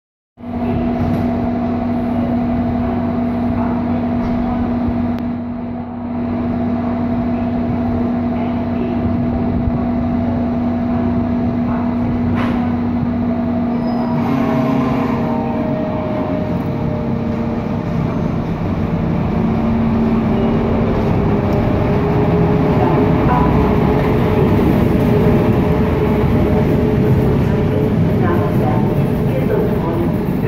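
Class 110 electric locomotive hauling a train of coaches away from a station platform. It hums steadily at first, then from about halfway a slowly rising tone sets in as it pulls away, and the rolling of the coaches past grows louder near the end.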